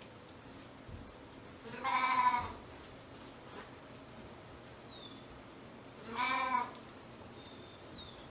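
A Shetland sheep in the flock bleating twice, two short calls about four seconds apart.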